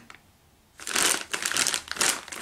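Clear plastic bag crinkling and rustling as it is handled, starting a little under a second in after a brief quiet.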